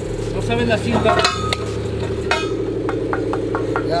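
Light metallic clinks and taps from a four-inch steel pipe and its elbow being handled and fitted on a pipe stand, with a run of quick taps past the middle. A steady engine hum runs underneath.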